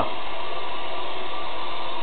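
Steady hiss with a faint even hum and no other events: the recording's constant background noise.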